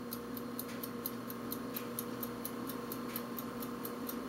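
Quiet, even ticking, about four ticks a second, over a steady low electrical hum.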